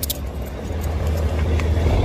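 Low rumble of handling and wind noise on a phone's microphone while the phone is held and moved in another person's hand, with a sharp click at the start.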